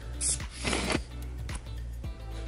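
Two short hisses from a pump-spray bottle misting room spray, the second one longer, over background music.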